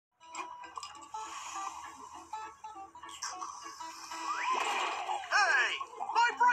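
Cartoon soundtrack playing from computer speakers: light music of short repeated notes, then near the end a loud cartoon voice sliding up and down in pitch.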